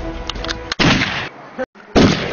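Two loud gunshots about a second apart, each with a short echoing tail, after background music breaks off.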